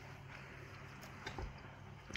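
Quiet room tone with a steady low hum and a faint click or two about a second and a half in.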